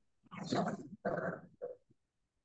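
A man's voice through a microphone: three short, quiet vocal sounds in quick succession, cut off by gaps of silence.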